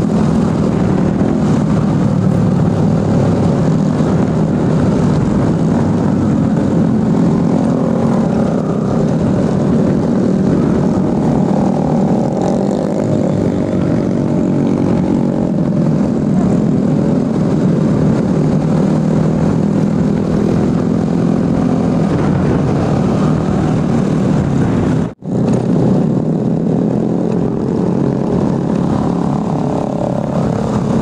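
Motorcycle engine running steadily while riding among a group of other motorcycles, mixed with wind rushing over the microphone. The drone wavers in pitch, and the sound cuts out for an instant about 25 seconds in.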